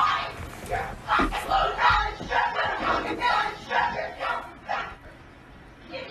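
Voices yelling and shouting in repeated bursts with no clear words, dying down about five seconds in.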